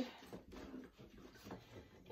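Faint handling noises as items are slid into the side pockets of a fabric sewing-machine carrying case: soft rustling with a few light knocks.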